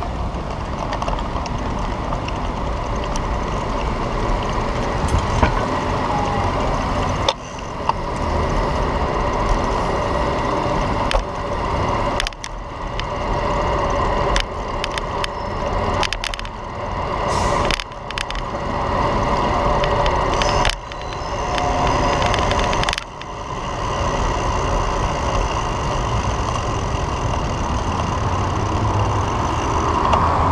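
Riding noise from an electric scooter in a city bike lane: a steady rumble of wheels and wind, with street traffic, broken by several brief dips in level.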